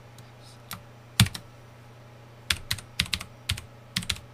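Computer keyboard keystrokes, slow typing: a few separate clicks in the first half, then a quicker run of keystrokes in the second half, over a steady low hum.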